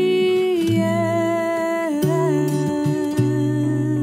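A female singer holds long wordless notes over fingerstyle acoustic guitar, the pitch stepping down slightly about halfway through, with plucked bass notes underneath.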